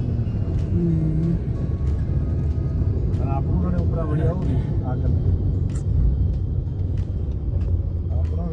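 Low, steady road rumble of a car heard from inside the cabin in slow traffic, with a background song whose voice comes up over it about three seconds in.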